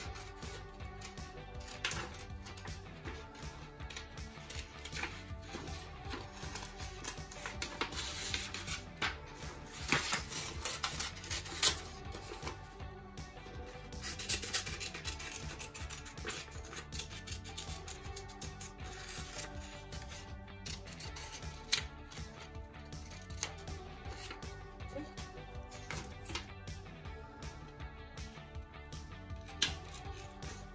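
Background music runs throughout, with scissors snipping through construction paper and the paper rustling as it is handled. A few sharper snips stand out, loudest around ten to twelve seconds in.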